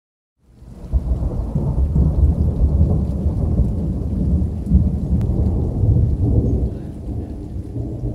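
Deep rolling rumble, like thunder, that swells up within the first second and eases off a little near the end, its weight low in the bass.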